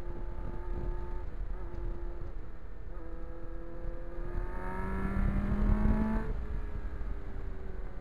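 Kawasaki Ninja sport bike engine through its Norton muffler, heard from the saddle at road speed with wind rush on the microphone. The engine note holds fairly steady, then climbs in pitch from about three seconds in as the bike accelerates and is loudest near six seconds. It then drops abruptly.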